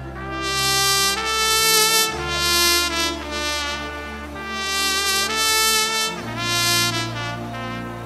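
Trumpet playing slow, long held notes in several phrases over steady, sustained low chords.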